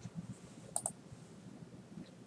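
Two quick, faint clicks about a tenth of a second apart, a little under a second in, over quiet room noise.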